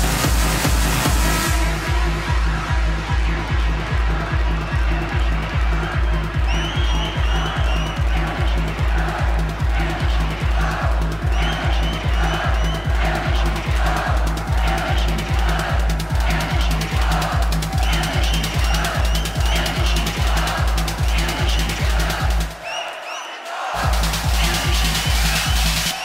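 Electronic dance music with a steady, heavy kick-drum beat and a repeating higher riff over it. The kick and bass drop out for about a second near the end, then come back in.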